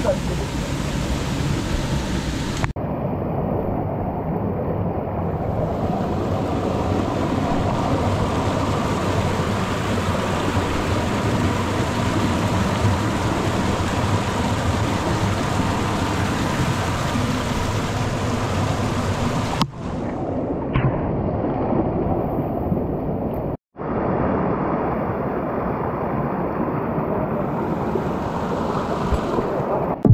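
Steady rushing of a rocky stream and small waterfall, loud and even, changing abruptly a few times, with a brief dropout about 24 seconds in.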